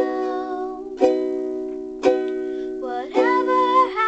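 Ukulele strummed, one chord about every second, each left ringing, while a young girl sings a melody over it, a new sung phrase starting about three seconds in.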